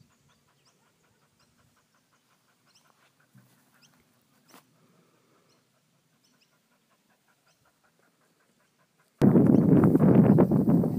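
Mostly near silence with faint, quick, rhythmic panting of a kelpie sheepdog. About nine seconds in, a sudden loud rush of noise cuts in.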